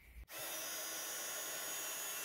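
Embossing heat gun running, a steady blowing hiss with a thin high whine, starting abruptly about a quarter second in. It is melting copper embossing powder on a freshly stamped sentiment.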